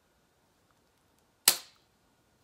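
A hyaluron pen, a spring-loaded needle-free injector, firing once with a sharp snap about one and a half seconds in as it shoots hyaluronic acid filler into the skin of the jawline.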